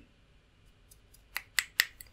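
A few short, sharp clicks: faint ticks first, then three louder clicks in quick succession in the second half.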